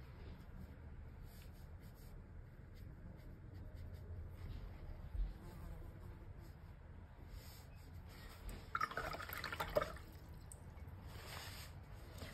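Faint room hum with soft swishing of a wet watercolour brush on paper, with a short, louder swish about nine seconds in and another just before the end.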